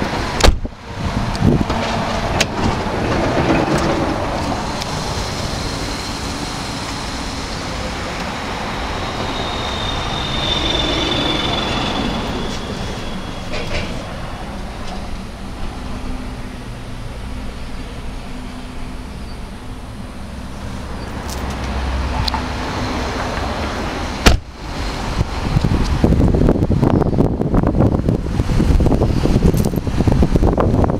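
Handling noise from a handheld camera over a low steady rumble inside a car cabin; about 24 seconds in, a sudden cut gives way to louder wind buffeting the microphone outdoors.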